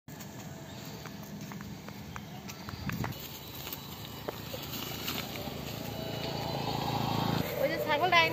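A steady low hum with scattered light clicks, growing louder over the last few seconds, then a woman speaking loudly just before the end.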